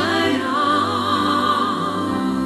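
Worship song sung with vibrato over a sustained low accompaniment. One long note is held from about half a second in until near the end.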